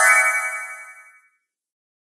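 A short cartoon chime sound effect: a bright ringing tone with a sparkling high shimmer that fades away within about a second and a half. It is the cue that a character has just had an idea.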